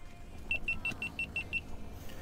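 Seven short, rapid high-pitched electronic beeps, about six a second, from a small electronic beeper, over a low steady rumble.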